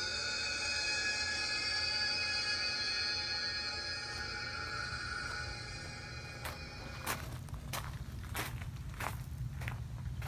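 Soft sustained music tones that fade out over the first half. Then, from about six and a half seconds in, footsteps crunching on gravel at a steady walking pace, about one and a half steps a second.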